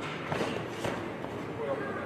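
Two sharp thuds about half a second apart from a kickboxing exchange, as strikes land on padded gear and a young fighter is knocked down onto the padded mat.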